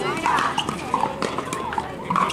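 Pickleball paddles hitting a plastic pickleball during a rally, a few sharp hollow pops, over voices talking around the courts.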